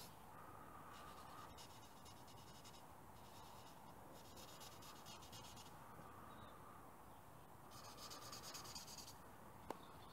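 Faint scratching of a marker pen's tip on paper, in a few runs of quick strokes.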